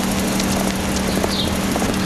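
An SUV on Bridgestone Dueler tires running on a giant treadmill: a steady mechanical drone of engine and tyres rolling on the moving belt, with a constant low hum.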